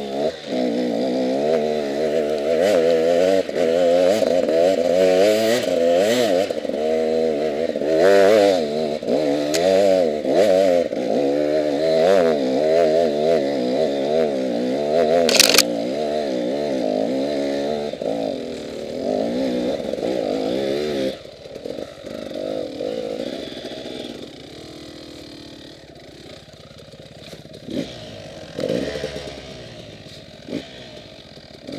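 Enduro dirt bike engine revving up and down in quick bursts under load, with a sharp knock about halfway through. About two-thirds of the way in the revs drop and the engine runs low and steady, with a few knocks near the end.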